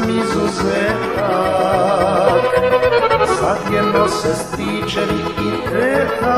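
Serbian folk (narodna) song recording: an accordion-led band plays over a steady bass-and-drum beat between the singer's phrases.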